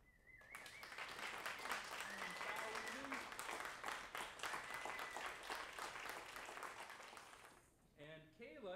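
Audience applauding with some cheering, and a whistle as the clapping begins; the applause dies away near the end.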